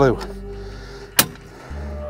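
A single sharp click from the Thule T2 Pro XTR hitch bike rack as it is handled, about a second in, over a steady background hum.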